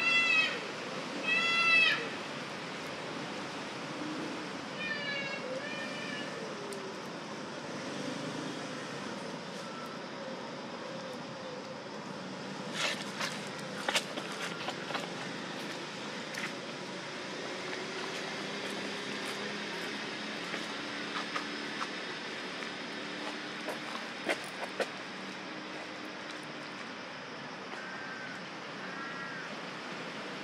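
Baby long-tailed macaque giving short, high squeals that rise and fall: two loud ones at the start, a couple of fainter ones about five seconds in and again near the end. A few sharp clicks come around the middle over steady outdoor background noise.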